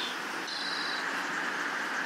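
Outdoor ambience: a steady hiss with a short, high-pitched chirp about half a second in.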